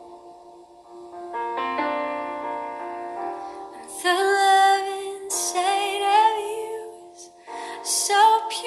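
Slow worship song: a woman singing a sustained melody with vibrato over held chords, her voice coming in about four seconds in after the chords alone.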